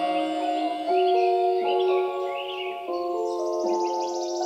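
Instrumental break in a trap beat: held synth chords that change about once a second, with no drums or bass, and short high gliding chirps over the top near the middle.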